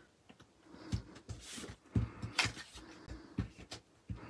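Paper-crafting handling noises: cardstock and patterned paper being moved and pressed on the table, and a tape runner drawn along the patterned paper strip, giving a few short knocks and scrapes.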